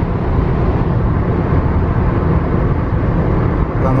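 Steady road noise heard from inside a moving car's cabin on a freeway: tyre and engine noise, heaviest in the low end.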